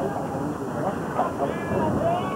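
Spectators and players talking and calling out at a baseball game: several voices overlapping, with no clear words.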